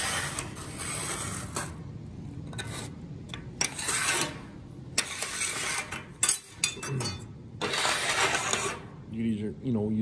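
Speed square pushed flat across a steel welding table, scraping and sweeping loose metal chips off the surface in several strokes of about a second each. A man's voice comes in near the end.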